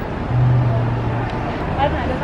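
Street traffic: a motor vehicle passing close, its engine a steady low hum for about a second near the start, over the general noise of a city street.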